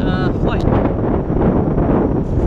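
Wind buffeting the camera microphone with a steady low rumble, and a man's voice briefly near the start.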